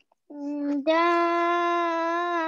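A child's voice holding one long, steady vowel, with a small step up in pitch about a second in. It is a drawn-out madd vowel in tajweed reading practice, stretched over several counts.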